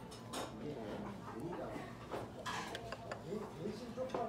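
Murmur of voices in the background, with a few short clicks of steel chopsticks against plates and bowls, about half a second and two and a half seconds in.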